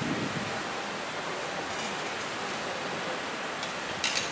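Chef's knife slicing through cooked pork belly on a wooden cutting board, over a steady background hiss, with a light tap of the blade on the board near the end.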